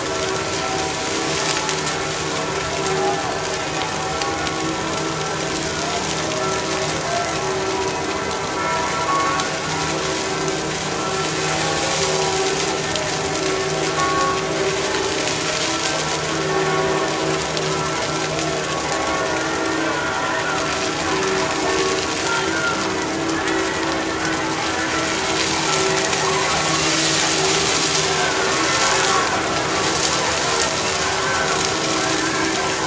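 A large wood bonfire burning with a steady crackling hiss, mixed with falling rain. Under it runs music with long held notes, one of which drops out about three-quarters of the way through.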